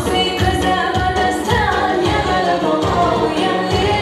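A woman singing a pop song live into a microphone, backed by electronic keyboard accompaniment with a steady beat of about two low thumps a second.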